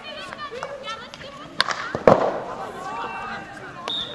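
Field hockey players calling to each other across the pitch, with a sharp crack about one and a half seconds in and a louder thump half a second later.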